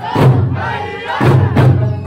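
Okinawan eisa performance: large ōdaiko barrel drums struck about once a second, mixed with the dancers' shouted calls over the accompanying music.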